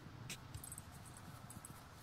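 Near-quiet ambience: a faint steady low hum with a light click about a third of a second in and a few tiny ticks around the middle.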